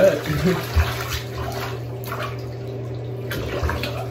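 Water splashing in a bathtub as a dog is washed and rinsed. It starts with a sudden loud splash, then a steady wash of water.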